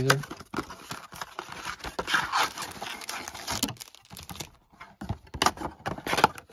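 A cardboard trading-card blaster box being opened by hand: paperboard flap pulled open with tearing and crinkling, and rustling handling for about three and a half seconds, then a few scattered clicks and knocks of handling near the end.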